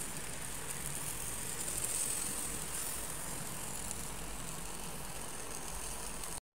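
Fish sizzling as it grills on a rack in a hot oven, a steady high hiss with faint crackle.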